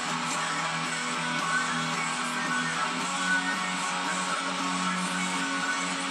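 Electric guitar playing a rock riff: held low notes and strummed chords at a steady level, changing about once a second.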